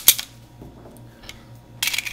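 Handling noise from a stainless Ed Brown Kobra Carry 1911 pistol: sharp metallic clicks and clinks as it is picked up and moved over a wooden table. There is a cluster of clicks at the start and another near the end, over a low steady hum.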